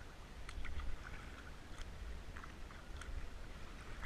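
Kayak paddle strokes: the blade dipping and splashing in the lake water, with drips and a few sharp ticks, over a steady low rumble.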